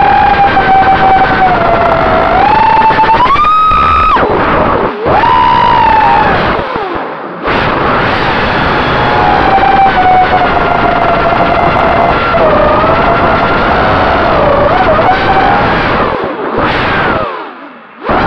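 GE 220 FPV racing quadcopter's motors and propellers, heard through its onboard camera's microphone: a loud whine whose pitch rises and falls with the throttle. It drops away briefly where the throttle is chopped, about four to five seconds in, around seven seconds, and twice near the end.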